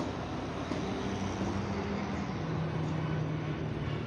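A truck engine running steadily, a low hum whose pitch drops a little about halfway through.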